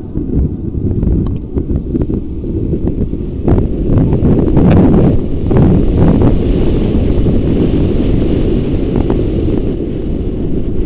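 Wind buffeting a helmet-mounted microphone on a moving motorcycle, with the bike's engine and road noise underneath as it rides a rough, broken country road. A few sharp knocks come between about four and six seconds in.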